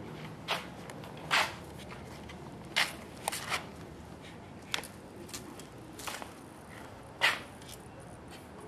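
Scattered short scrapes and clicks, about eight of them and a few quite loud, as a crashed Titan 450 RC helicopter is picked up and handled on concrete; its motor and rotor are not running.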